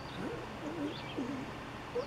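Faint low bird calls: three short wavering cooing phrases, with a tiny high chirp between them.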